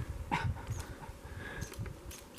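Irregular low thumps and rustling from a handheld camera being swung about, with one short call that falls steeply in pitch about a third of a second in.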